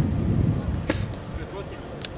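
Wind buffeting the microphone, rumbling low and loud at first and easing off, with one sharp crack about a second in.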